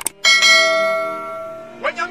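A click, then a bright bell ding about a quarter second later that rings on and fades over about a second and a half: the notification-bell sound effect of a subscribe-button animation.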